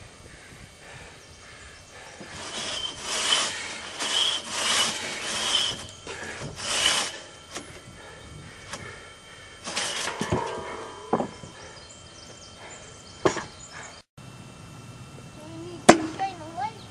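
A hand tool working wood: about six rasping strokes in quick succession, then a few sharp knocks, and near the end one sharp, loud strike.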